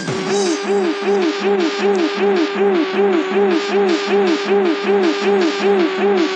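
Electronic dance music from a mid-90s club DJ session in a breakdown: the kick drum and bass drop out. A synth riff repeats a short rising-and-falling glide about three times a second over a steady pulse and hi-hats.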